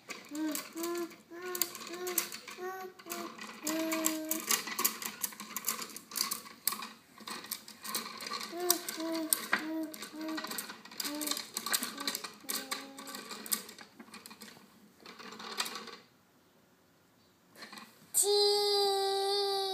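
Wooden abacus beads on a toddler's activity cube clacking as they are slid along their wires, in quick irregular runs of clicks, while a toddler sings short repeated syllables. The clicking stops about two seconds before the end.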